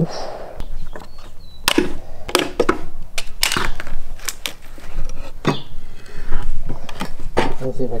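Irregular sharp knocks and clanks, about a dozen over several seconds, from a partly sawn low-carbon steel bar being handled on a plywood board.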